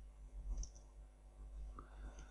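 A few faint computer keyboard keystrokes, typed while coding.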